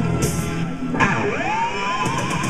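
Solo electric guitar played through an amplifier. About halfway through, a struck note dives steeply in pitch and swoops back up into a held high note.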